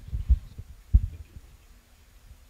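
Dull low thumps of a handheld microphone being handled and moved, a quick cluster at the start and one more about a second in.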